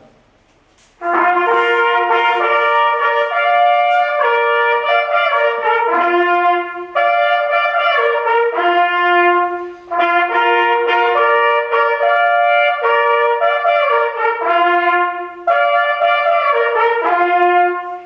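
Two hunting horns play a ceremonial hunting fanfare, a signal honouring the newly decorated member. It starts about a second in and moves through several loud phrases of held notes, often in two voices, with brief breaks between phrases.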